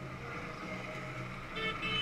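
Faint running sound of a small electric Power Racing Series kart passing on the track, over a steady low hum.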